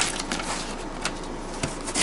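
A Condor knife cutting and scraping through duct tape and cardboard on a package, with crinkling tape and a few sharp clicks.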